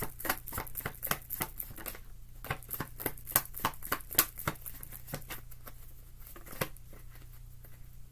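A tarot deck being shuffled by hand: a quick, uneven run of soft card clicks and slaps that thins out after about five seconds and stops.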